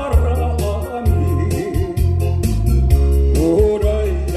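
A man singing a Korean song into a microphone over a backing track of electronic organ, bass and a steady drum beat; his held notes waver with vibrato, swelling near the start and again near the end.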